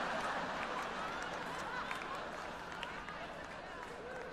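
A large audience laughing together, loudest at the start and slowly dying down.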